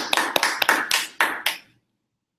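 Audience applauding with many overlapping hand claps, cutting off abruptly near the end.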